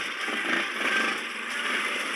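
Small ATV (quad bike) engines running steadily.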